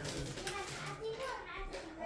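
Background chatter of several voices, a child's among them, talking indistinctly.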